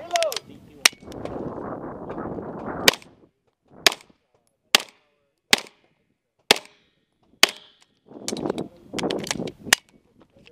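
A 9mm CMMG MK9T short-barrelled carbine firing about a dozen shots, mostly about a second apart, with a quicker string of shots near the end. Between the volleys there are stretches of rushing noise.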